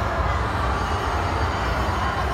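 Steady background din of a busy indoor venue, with a deep, continuous rumble underneath.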